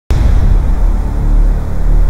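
Cinematic logo-intro sound effect: a sudden loud hit that fills all frequencies, followed by a sustained deep rumble.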